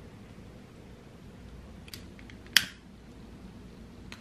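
A few faint ticks, then one sharp, loud click about two and a half seconds in, over quiet room hiss.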